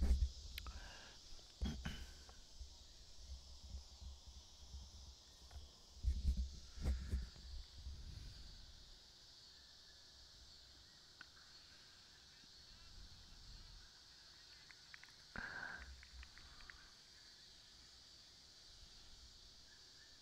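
Faint outdoor night ambience: a steady high-pitched hum of insects, with a few faint low bumps and brief distant sounds in the first several seconds and once more around the middle.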